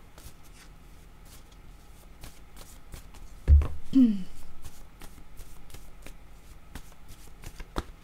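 A deck of oracle cards being shuffled by hand, with many soft papery card clicks. About three and a half seconds in there is a low thump, and right after it a brief voiced sound.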